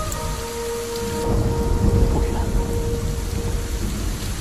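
Heavy rain pouring, with a low rumble of thunder that swells in the middle. A faint held musical tone lies under it.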